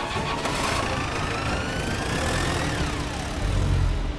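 A vehicle engine revving up, its pitch climbing steadily for a couple of seconds and then dropping away. A deep low rumble swells near the end.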